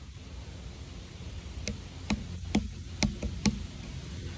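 Low steady rumble with a quick run of about six sharp clicks or taps, irregularly spaced, through the second half.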